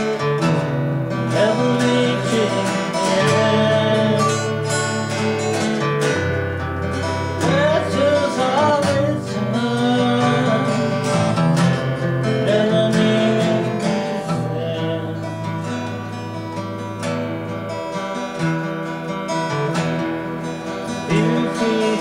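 Two acoustic guitars played together in a slow song, with a voice singing over them at times.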